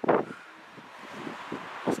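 Faint, steady outdoor background noise with a light rush of wind, between two spoken words.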